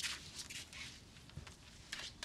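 A few short, soft swishes as cut hair is brushed off the back of a neck by hand.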